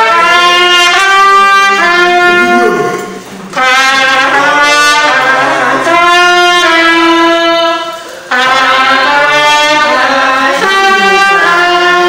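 Trumpet playing a slow melody of long held notes, in phrases broken by short breaths about three and a half and eight seconds in.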